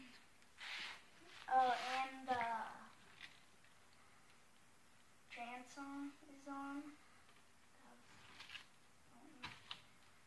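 A person's voice making short wordless hums: one wavering hum about a second and a half in, then three short hums a few seconds later, with a few faint clicks near the end.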